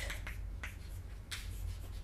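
Chalk writing on a blackboard: faint scratching with one sharp tap about two-thirds of the way through, over a steady low hum.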